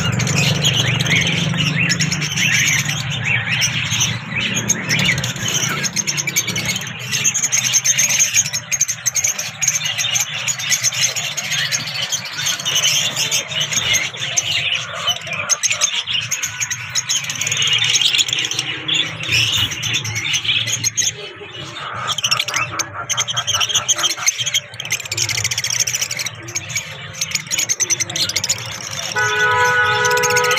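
A cage full of lovebirds chattering: a dense, continuous mass of high chirps and squeaks from many birds at once.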